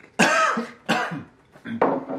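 A man with a lost, hoarse voice clearing his throat and coughing, three short harsh bursts.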